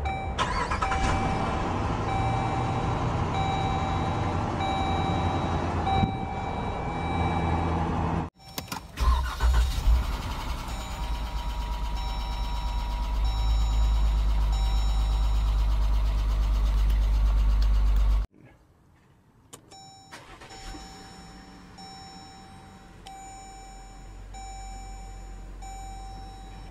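Jeep Grand Cherokee dashboard chimes repeating at a steady pace, about once a second, over the engine starting and idling. The sound comes as three clips of different model years: the middle one has a loud, deep engine rumble and the last one is quieter.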